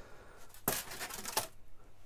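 A brief rustle of something being handled, lasting under a second, about two-thirds of a second in.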